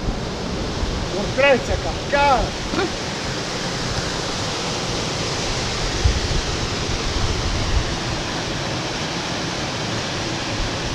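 Steady rushing of a small mountain waterfall cascading over granite into a pool. A person's voice is heard briefly about a second and a half in.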